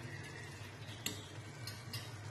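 Metal ladle stirring sponge gourd curry in a nonstick frying pan: faint scraping with one sharp click of the ladle about a second in, over a faint sizzle as the gravy cooks down.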